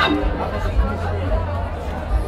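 Live blues band playing with a heavy, steady bass, heard from within the audience, with crowd chatter close to the microphone.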